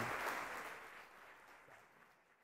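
Audience applauding, the applause fading steadily away.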